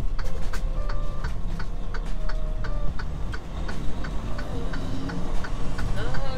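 Turn signal clicking steadily inside a semi truck's cab, about three clicks a second, with the truck's engine running low underneath.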